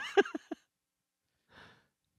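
A man's short laugh: a few quick breathy pulses that stop about half a second in, followed by a faint breath near the end.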